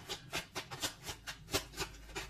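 Tarot cards being shuffled by hand: a quick run of soft flicks and slaps, about four a second.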